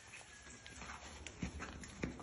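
Young wild boar piglets' hooves tapping and clicking faintly on a tiled floor as they move about, a few irregular taps with a slightly stronger knock about one and a half seconds in.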